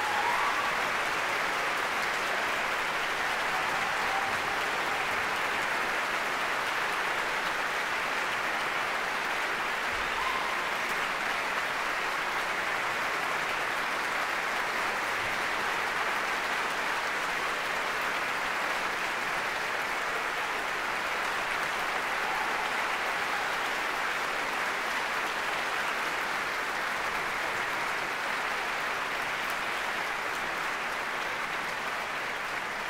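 Steady applause from a large concert audience, breaking out as the orchestral music ends and carrying on unbroken.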